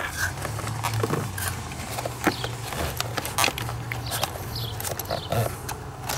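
Handling noise as a plastic electronic box, with its speedometer cable and wiring harness attached, is fitted onto a bolt under a car's dashboard: scattered clicks, taps and rustles of plastic, cable and wires over a steady low hum.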